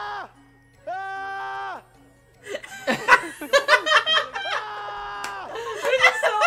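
Two held musical notes, like a variety-show sound effect, in the first two seconds, followed by excited voices and laughter from about two and a half seconds in.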